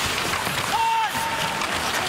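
Hockey arena crowd noise during live play: a steady murmur with a few faint clacks of sticks and puck. A short high tone comes in about three-quarters of a second in.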